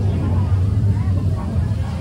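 Crowded restaurant dining-room din: a steady low rumble under the chatter of many diners.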